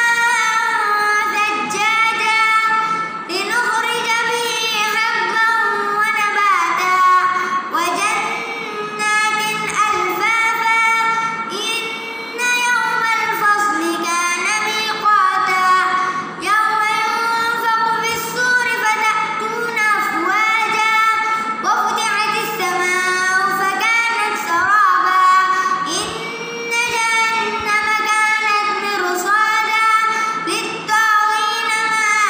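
A young boy's voice reciting the Quran in melodic tilawah style: long, drawn-out notes with ornamented pitch glides, in phrases broken by short pauses for breath.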